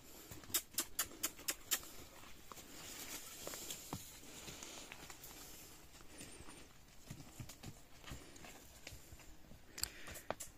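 Donkey hooves and footsteps on a dirt trail: a quick run of sharp clicks in the first two seconds, then faint, scattered steps.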